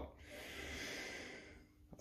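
A man's soft, drawn-out breath out close to the microphone, fading away about a second and a half in.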